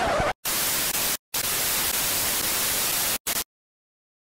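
Static hiss in stretches with short dropouts, like an untuned TV, cutting off suddenly about three and a half seconds in.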